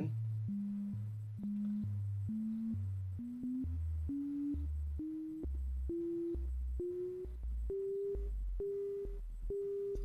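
Elektron Digitakt playing a test tone whose pitch a square-wave LFO on tune flips between a high and a low note about once a second. As the LFO depth is turned up, the high note climbs to about twice its pitch and the low note drops about an octave. Near the end the high note stops rising: the pitch modulation is maxing out at a depth of around ten.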